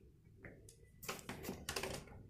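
Handling noise: a quick cluster of light clicks and rustles about a second in, and again near the end, as the handheld camera is moved over a bed and through a room.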